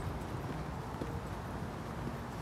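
Footsteps of a person walking at an even pace on an asphalt road, over a low steady rumble.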